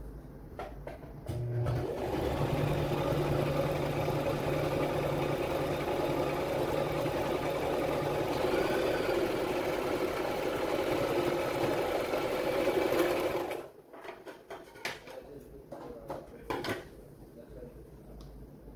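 Brother LX3817 electric sewing machine running steadily for about twelve seconds, stitching a decorative pattern, then stopping suddenly. A few light clicks and fabric handling sounds before it starts and after it stops.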